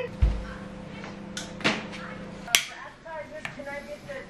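A few sharp clicks over a steady low hum, the loudest click about two and a half seconds in, after which the hum stops; faint voices follow near the end.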